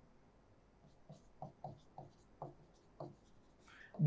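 Faint strokes and taps of a plastic stylus writing on the glass of an interactive display board, about seven short strokes in quick succession between about one and three seconds in.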